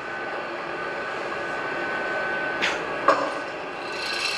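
Robot arm servo motors whirring with a thin steady whine, which stops about two and a half seconds in, followed by two sharp clicks, heard through a hall's loudspeakers with a steady background hum.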